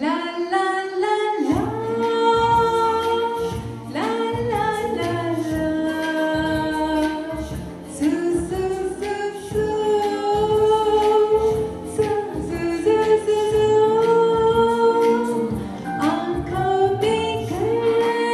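A woman singing a melody of long held notes into a microphone over musical accompaniment with a steady low drum beat.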